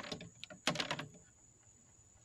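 Plastic bezel frame of a 15 W solar panel being lifted off the glass, clicking and knocking: a sharp click at the start and a short cluster of clicks a little under a second in.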